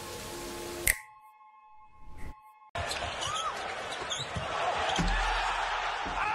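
Music with a held tone, broken by a sharp slam about a second in, then a short hushed stretch with one more knock. From about three seconds in, the steady noise of a basketball arena crowd, with a few thuds and short squeaks.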